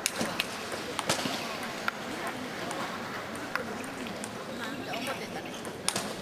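Table tennis ball clicking sharply off bats and table in an irregular run of hits, over a steady murmur of spectators talking in a large hall.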